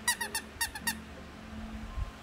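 Squeaky plush dog toy squeaking five times in quick succession, three then two, within the first second.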